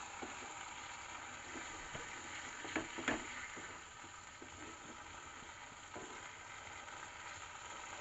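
Soya chunks frying in sauce in a wok on a gas burner, a steady sizzle while a spatula stirs them, with a couple of sharp knocks of the spatula against the pan about three seconds in.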